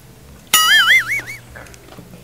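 A high-pitched squeal with a wobbling, vibrato-like pitch, starting suddenly about half a second in and lasting about a second.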